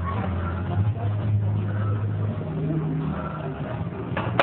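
A steady low hum, like a motor or engine running, over background noise, with a somewhat higher note joining it for a moment a little past halfway.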